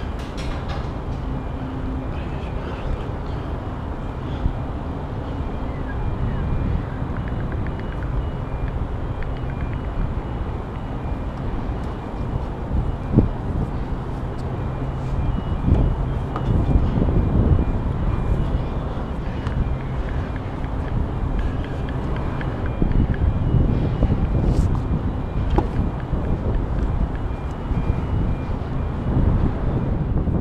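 Steady low rumble of wind and distant city traffic on an action camera's microphone high up in the open, with a low hum running under it. Now and then come knocks and rustles as the climber's hands work along iron girders, one sharp knock about thirteen seconds in.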